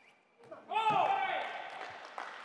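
A table tennis player's loud shout, starting about two-thirds of a second in, rising and then falling in pitch and dying away over about a second: a cry on winning the point. A few faint clicks of the ball come just before it.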